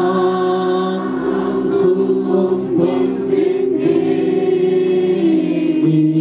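A crowd of people singing a hymn together, many voices holding long notes and moving from note to note together.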